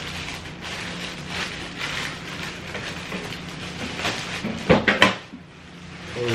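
A toolbox being pulled out of its cardboard packaging: rustling and scraping handling noise with small knocks, and a few louder clatters a little before the end.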